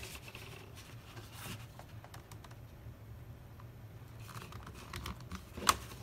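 Faint rustling, scraping and light taps of a plastic placemat being folded over and pressed flat by hand onto a line of hot glue, with one sharper tick near the end.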